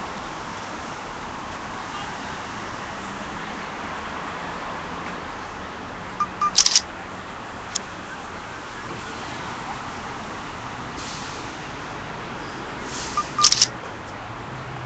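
Steady outdoor street background noise, broken by two brief clusters of sharp clicks, one about six seconds in and one near the end.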